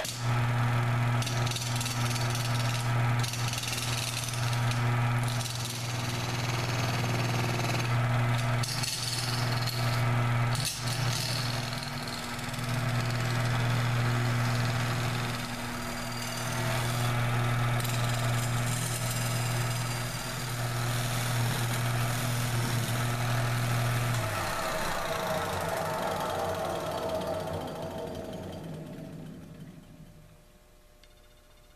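Wood lathe turning a cast epoxy-resin and sprinkle disc: a steady motor hum under the scraping of a turning tool cutting the resin, with occasional clicks. About three quarters of the way through the hum stops and the sound dies away over the last few seconds.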